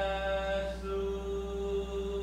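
A group of voices chanting in unison without instruments, in a Chamorro style: a held note gives way, under a second in, to one long lower note that is sustained to the end.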